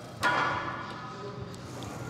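A single metallic clank from the Smith machine's steel bar and frame, ringing and fading over about a second.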